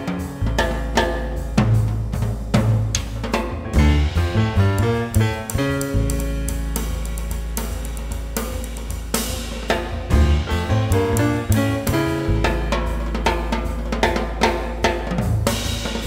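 Jazz piano trio playing an up-tempo Latin jazz (mambo) number: a Steinway Model D concert grand piano, upright bass and drum kit, with busy drums, cymbals and snare strokes to the fore and long held low notes underneath.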